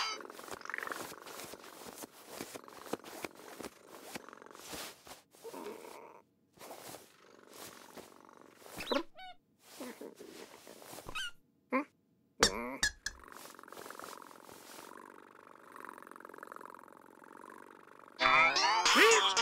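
Voiced cartoon cat purring as it turns around and settles into its bed, with a few short squeaky chirps about halfway through. It ends in a steady purr over the last five seconds as the cat curls up to sleep.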